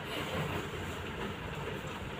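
Singer sewing machine running steadily, stitching through cloth.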